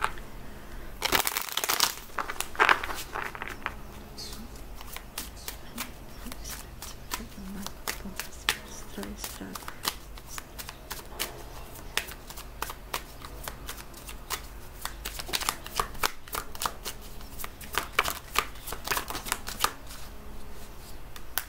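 A deck of tarot cards being shuffled by hand: a rapid patter of card clicks, louder in bursts about a second in and again in the last few seconds.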